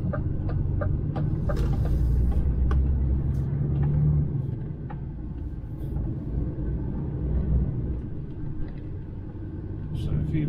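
The DAF XF 530's straight-six diesel heard from inside the cab on the move: a steady low rumble that pulls louder for a couple of seconds and eases off about four seconds in. Light regular clicks sound in the first two seconds.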